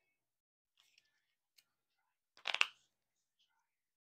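Tarot cards being handled: a few faint clicks, then one short card rustle about two and a half seconds in.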